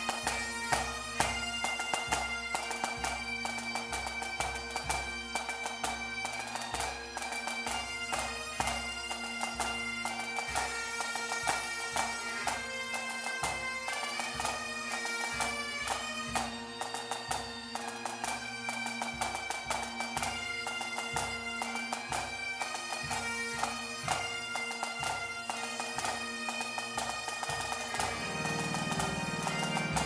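Pipe band playing a tune: Great Highland bagpipes sound a changing melody over their steady drones, with a drum beat thudding underneath in time.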